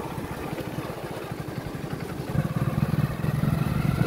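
Motorcycle engine running as the bike is ridden, growing louder about two seconds in as the rider opens the throttle.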